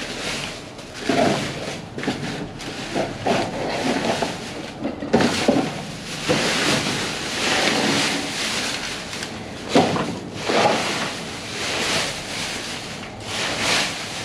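Plastic bags and bubble wrap rustling and crinkling as they are pushed and pulled about with a grabber tool inside a metal dumpster, with a few louder knocks and scrapes.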